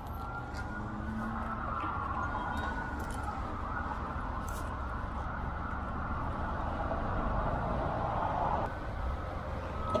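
An emergency-vehicle siren wailing, its pitch slowly rising and falling, over a low steady rumble; the wail stops near the end.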